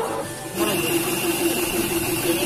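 Paint spray gun and its air compressor running: a steady hiss over a steady motor hum that starts suddenly about half a second in.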